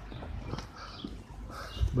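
Soft footsteps of a person walking, a few scattered steps over a low steady rumble on the phone's microphone.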